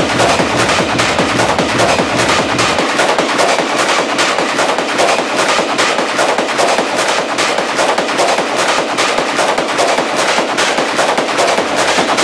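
Hard techno DJ mix in a breakdown: the kick drum and bass drop out, leaving rapid, evenly repeated percussion hits over a high synth wash. The low end thins further about three seconds in.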